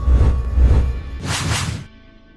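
Music sting for an animated logo, opening with a sudden deep bass hit and carrying a whoosh sweep about a second and a half in, then dropping away near the end.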